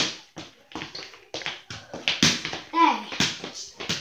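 Irregular taps and thuds of a small ball bouncing and feet moving on a hardwood floor, mixed with a child's short vocal sounds.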